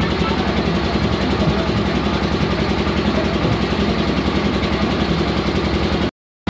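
An engine idling steadily and loudly, with an even low rumble and a slight regular pulse.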